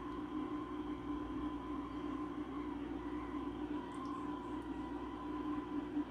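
Hot-air rework heat gun running steadily, its blower fan and air stream giving an even hiss with a faint high whine, as it heats a surface-mount capacitor to melt its solder.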